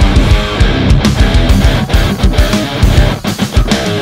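Heavily distorted electric guitar playing fast, rhythmic low metal riffs through a Two Notes Le Lead preamp pedal driving an Electro-Harmonix 44 Magnum solid-state power amp pedal into an Orange 2x12 cabinet, turned up to about 90 dB. The riff breaks off briefly a few times after about three seconds.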